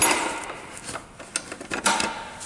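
An underbox under the tool chest being handled: a knock at the start, a few light clicks and rattles, then a second knock near the end.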